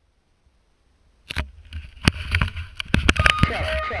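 Knocks, clicks and rubbing of a helmet camera being handled and put on, over a steady low wind rumble on the microphone, starting suddenly about a second in after silence.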